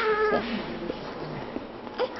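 A newborn baby crying: one short cry at the start, then quieter.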